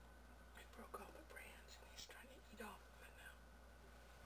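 Faint whispered speech for a few seconds, over a quiet background hum.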